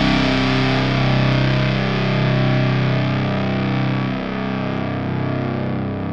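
Crust punk music: distorted electric guitar chords held and ringing out, with no drum hits, while the sound slowly dulls and fades.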